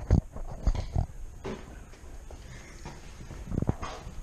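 Footsteps thudding on old wooden floorboards strewn with plaster debris: a few heavy steps in the first second and two more near the end.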